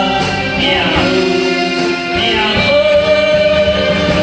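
A song sung over instrumental accompaniment, with long held notes and a falling phrase about a second in.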